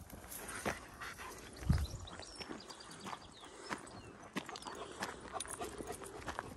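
Dogs and people walking on a dirt path through long grass: scattered footsteps and rustling, with a dull thump a little under two seconds in. Faint bird chirps sound in the middle.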